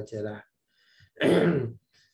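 A man clears his throat with one loud, rough cough about a second in, just after a brief spoken word.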